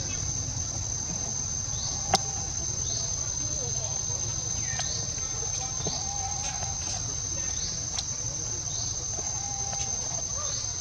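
Insects droning outdoors with a steady high-pitched tone, joined by short rising chirps about once a second. A sharp click comes about two seconds in and a fainter one near the end.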